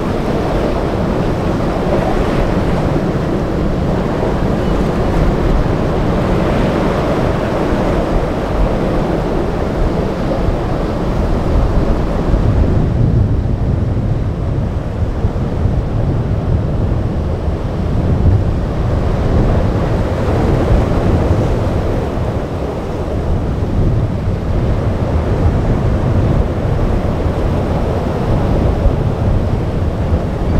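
Wind buffeting the microphone over breaking surf, with boat engine noise mixed in. About halfway through, the sound turns darker, with a deeper low rumble of wind and sea.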